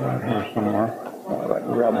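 A man's voice talking, the words indistinct.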